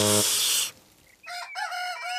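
Rooster crowing, one long cock-a-doodle-doo beginning about a second in, announcing morning. Before it, a rain hiss cuts off abruptly after under a second.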